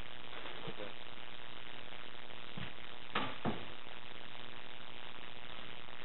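Steady electrical hiss and buzz, with a faint murmur of voices about a second in and two sharp knocks less than half a second apart about three seconds in.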